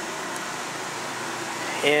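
Steady mechanical whir of running machinery, even and unchanging.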